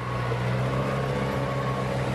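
Heavy excavator-type machine's engine running steadily at the debris site, a constant low hum with a faint higher whine over it.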